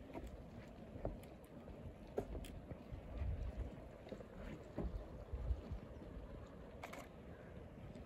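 Low, gusty rumble of wind buffeting the microphone, swelling twice in the middle, with a few faint clicks.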